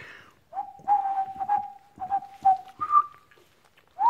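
Airedale Terrier puppy whining: a string of short, steady, high whines, then one higher whine near the end. Light clicks, like small claws on a tile floor, come in between.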